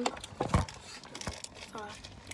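Handling noise: a few short crinkling rustles and knocks in the first half, then a quiet stretch, with a brief spoken 'uh' near the end.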